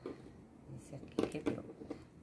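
Quiet handling sounds of a small fork and fingers working among succulent cuttings and potting soil, with a few light clicks. A short murmured voice comes about a second in.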